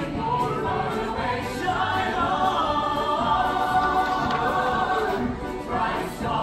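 A stage-musical ensemble singing together in chorus, many voices holding sustained notes in a continuous song.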